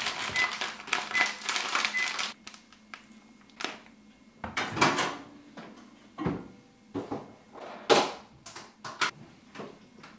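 Crinkling of a plastic microwave rice pouch being squeezed and handled for the first couple of seconds, then a series of separate knocks and clunks of kitchen handling, the loudest about eight seconds in.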